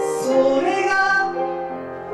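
A man singing a melody of held notes into a handheld microphone, with keyboard accompaniment in a live performance.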